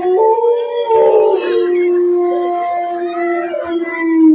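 Canine howling on a horror soundtrack: several long, steady-pitched howls overlap at first, then a single held howl falls away near the end.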